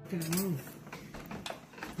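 A brief voice sound, a hum or murmured word, near the start, then a few light clicks of kitchen utensils against the pan.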